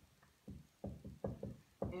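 Dry-erase marker writing on a whiteboard: a quick run of short taps and squeaks as each letter is stroked on. A voice starts up again near the end.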